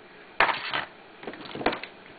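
Broken pieces of a smashed chocolate bunny being handled: a sharp click, then a short rattle lasting about half a second, and another click near the end as the hard pieces knock together.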